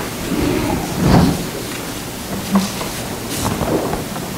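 Steady rumbling, hissing background noise with a few soft knocks and rustles, and a brief swell about a second in.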